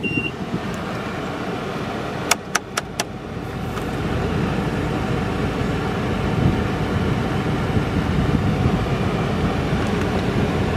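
Steady low rumble of the running 2012 Ford Econoline van heard from inside its cab, growing a little louder after four quick clicks about two to three seconds in. A short beep sounds right at the start.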